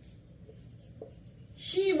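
Marker pen writing on a whiteboard: faint strokes with a couple of short light taps of the tip. A woman's voice says "she" near the end.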